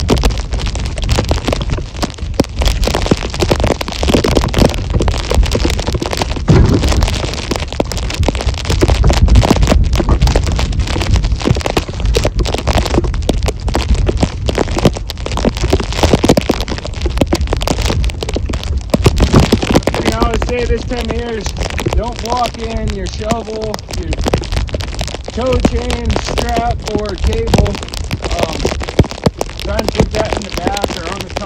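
Steady rushing noise of wind on the microphone in falling snow, with scattered knocks and cracks as split firewood rounds are set into a pickup bed. A voice is heard faintly in the later part.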